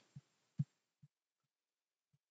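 A very quiet pause holding a few faint, short low thumps, about four in two seconds, the clearest a little over half a second in.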